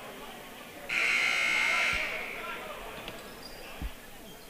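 Gymnasium scoreboard horn sounding one buzz of about a second, signalling the end of a timeout, over crowd chatter in a gym. A dull thump comes near the end.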